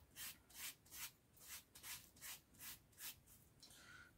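Faint, scratchy strokes of an old bristle paintbrush drawing black liquid latex across a piece of foam mat, about two strokes a second.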